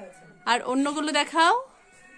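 A high-pitched voice lasting about a second, wavering and sliding up in pitch at the end.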